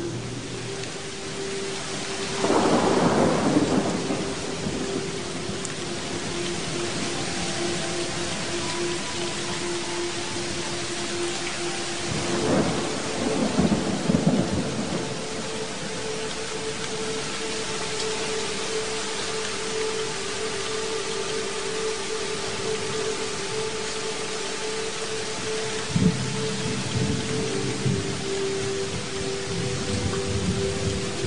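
Thunderstorm: steady rain with thunder rolling twice, a few seconds in and again about halfway, and a sharp thunderclap near the end, over a sustained musical drone.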